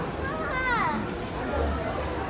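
Background chatter of many voices, with a child's high-pitched voice calling out once about half a second in, its pitch sliding downward.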